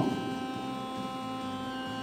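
A steady electrical hum with several held tones, level and unchanging throughout, from the amplified sound system; no saxophone is playing.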